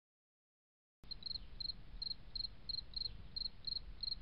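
Crickets chirping faintly, short high chirps repeating about three times a second over a soft hiss, starting about a second in after silence.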